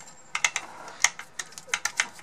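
A quick, irregular run of about ten sharp plastic clicks and taps as the mixer's speed-control circuit board is handled and pressed into its mount in the housing.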